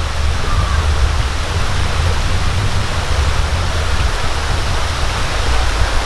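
Shallow rocky creek running over stones: a steady rush of flowing water with a low rumble underneath.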